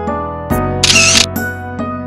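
Background music with sustained keyboard notes, broken about a second in by a short, loud camera-shutter sound effect.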